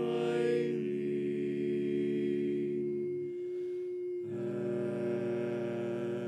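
Barbershop quartet singing a cappella, holding a sustained chord. One voice keeps a single long note steady throughout while the other parts break off for about a second just past the middle and then come back in.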